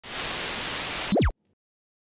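Burst of static hiss, about a second long, ending in a quick, louder falling zap that cuts off suddenly, like an old television switching off.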